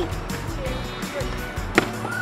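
Background music with a steady beat, and near the end a single sharp knock as a plastic water bottle hits the paving stones and falls over on its side.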